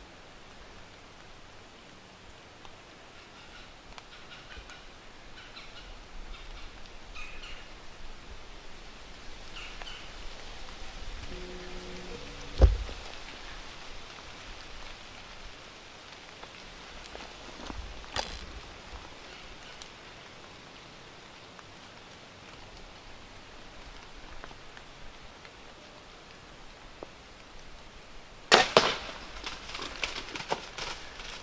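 Compound bow shot at a whitetail buck about 20 yards off: near the end, a loud sharp crack of the release and the arrow striking, then a short spell of noise as the hit deer runs off through dry leaves. Before that, quiet woods with faint rustling and one low thump about twelve seconds in.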